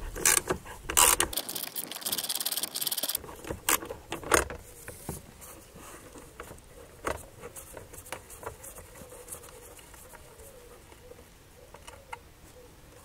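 Quarter-inch socket wrench ratcheting on a 10 mm nut: a fast run of clicks for about two seconds near the start. Then come a few separate clicks and knocks, and faint small metal sounds as the nut is worked off its stud by hand.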